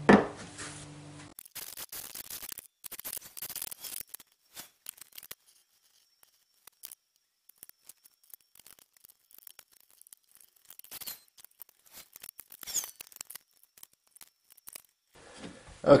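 Light clicks and taps of small parts and a hot glue gun being handled on a workbench. They come in scattered little clusters, with a sharper click about a second in and a quiet stretch in the middle.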